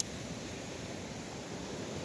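Steady hiss of wind on the microphone outdoors, with one brief click at the very start as a small switch on a control box is pressed.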